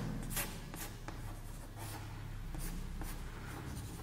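Chalk on a chalkboard: a series of short, faint scratches and taps as small line strokes are drawn.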